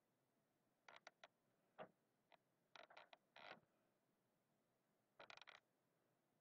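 Faint short strokes of an Expo dry-erase marker writing on a gridded board, in quick clusters about a second in, around three seconds and again near five seconds.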